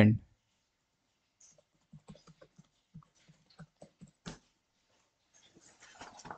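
A run of faint, irregular clicks and taps, about a dozen over two seconds, then near silence.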